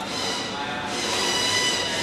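Plastic grid mask of an LED display module squeaking as it is rubbed and pressed against the module by hand: a short high-pitched squeal at the start, then a longer, louder one from about a second in.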